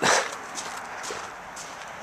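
A short rustling noise right at the start, then a steady low background hiss.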